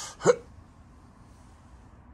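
A single short, sharp vocal sound from a man, rising quickly in pitch about a quarter second in, just after the end of an outward breath. A steady low hum underlies the rest.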